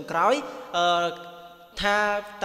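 A man's voice narrating in Khmer, with long drawn-out, chant-like syllables: a rising glide at the start, then a held note about three-quarters of a second in and another near the end.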